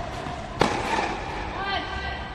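A single sharp pop of a tennis ball struck by a racquet, a little after halfway, followed near the end by a brief high-pitched squeak.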